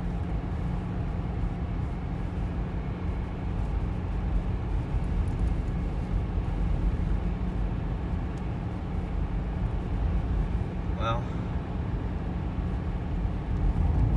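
Steady low rumble of a car driving on the road, heard from inside the cabin: engine and tyre noise.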